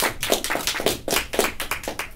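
A small group of people applauding, with quick irregular hand claps that thin out and stop near the end.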